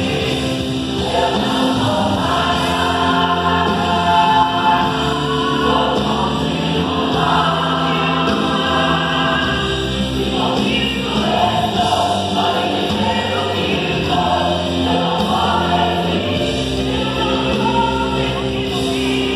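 Mixed choir of women's and men's voices singing a gospel song together.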